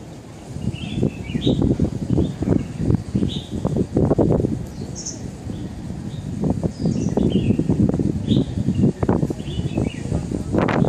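Small birds chirping in short, scattered high calls over a gusty low rumble.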